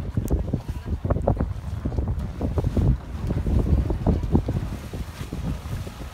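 Wind buffeting a phone's microphone on a moving boat: an uneven low rumble that swells in gusts, loudest in the middle.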